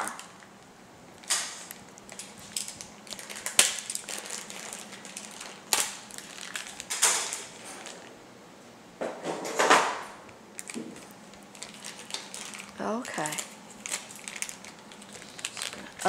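Clear plastic bag crinkling and rustling in short irregular bursts as it is handled and opened, with small plastic parts rattling inside.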